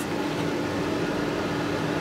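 Steady hum and hiss with one constant low tone held throughout, and no other event.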